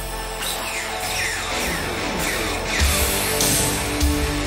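Live heavy-metal band: an electric guitar plays a run of repeated falling pitch swoops bent with the tremolo arm, and the drums come in with heavy hits about three seconds in.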